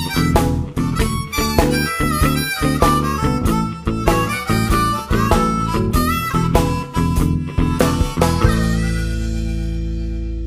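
Recorded blues song with a harmonica leading over guitar and a steady beat. About eight and a half seconds in, the band stops on one held chord that rings and slowly fades.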